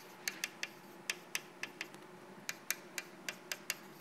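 Chalk writing on a blackboard: an irregular series of about fifteen light, sharp taps and clicks as the chalk strikes the board with each letter.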